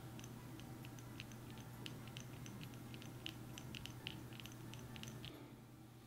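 Tiny stirrer mixing clear glue, food colouring and glitter in a miniature bowl: faint, irregular sticky clicks and ticks, busiest in the middle. They stop a little after five seconds.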